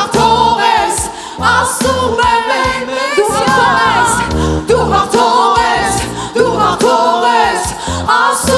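Live worship song: a woman's lead voice sung into a handheld microphone, with backing singers, over a band with a steady beat and a bass line.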